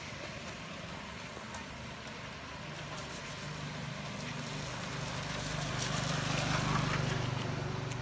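A car driving along a rain-wet street, its engine and tyres swishing on the wet road, growing louder to a peak about two-thirds of the way through and then fading as it passes, over a steady hiss of rain.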